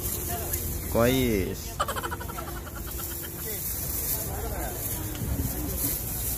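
Voices of people at an open-air market, with one loud, drawn-out call about a second in and quieter talk after it, over a steady low rumble.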